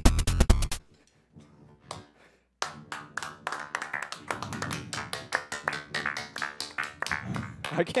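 A live band's electronic dance track with a fast driving beat cuts off abruptly about a second in. After about two seconds of near silence, hand clapping starts and keeps going, with voices cheering over it.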